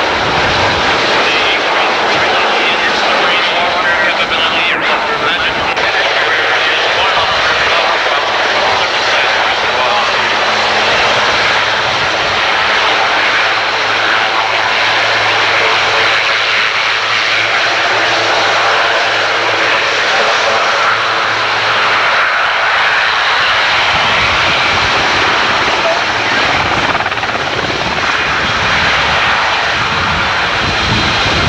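Canadian Forces CH-124 Sea King helicopters' twin turbine engines and rotors, a loud, steady rush as they fly past and then hover low. A low, steady hum sits under it through the middle.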